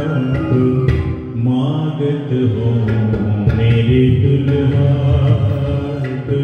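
Devotional bhajan music: a male voice singing over harmonium, electronic keyboard and tabla, with the melody gliding in pitch and a few sharp drum strokes.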